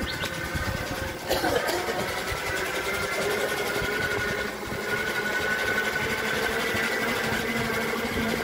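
A motor running steadily at an even pitch, with a short sudden noise a little over a second in.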